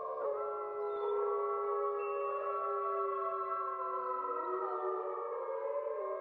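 Background music of sustained, layered chords whose notes slide slowly in pitch about four seconds in, giving a wavering, siren-like sound.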